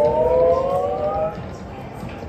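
Goblin's Gold video slot machine playing its electronic spin sound as the reels start: several tones rising together in pitch for about a second and a half, then giving way to background noise.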